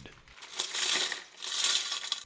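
Metal finds rattling and jingling inside a plastic jar as it is picked up and tipped, in two spells, the first about a second long.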